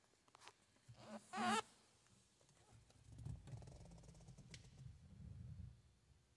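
Handling noise from someone moving about inside the car: a short wavering squeak about a second and a half in, then a few seconds of low rustling and bumping.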